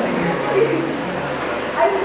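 Group of students and a teacher laughing and chattering, with short bursts of voiced sound that bend in pitch.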